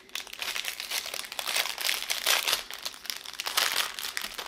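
Small clear plastic bags of diamond-painting drills crinkling as they are handled: a dense run of crackles, louder about two seconds in and again near the end.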